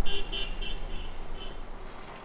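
Street traffic: a vehicle horn tooting about five short times in quick succession over a low engine and traffic rumble that fades toward the end.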